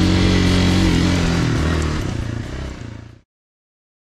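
Single-cylinder dirt bike engine running at steady revs while riding a dirt track, heard from the rider's helmet camera. The sound fades over the last second and cuts off to silence about three seconds in.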